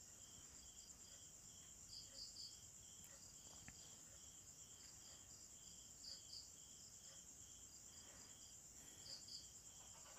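Very faint insect chirping in the background: a steady high trill with a short chirp repeating about twice a second and a higher double chirp every few seconds.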